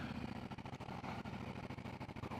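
Harley-Davidson Road Glide Special's V-twin engine running steadily at low road speed, a low, even pulsing note.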